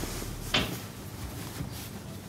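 Cloth handling: a blanket and a trouser leg being pulled and rolled back, with one short, sharp rustle or scrape about half a second in and soft rustling after it.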